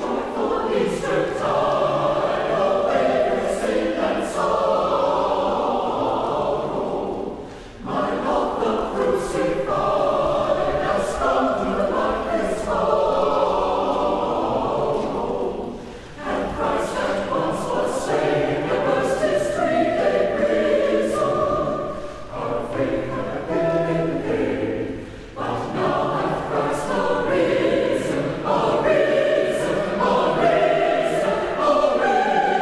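Church choir of men and women singing together, in phrases broken by short pauses about 8, 16 and 25 seconds in.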